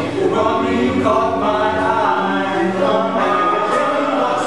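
Men's chorus singing a cappella in harmony, holding chords that change every second or so.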